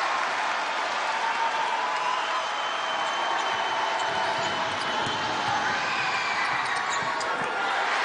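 A basketball being dribbled on a hardwood court, the bounces coming through most clearly in the second half, over the steady noise of a large arena crowd.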